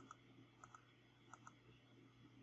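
Faint computer mouse clicks: three pairs of quick clicks, about two thirds of a second apart, over a low steady hum.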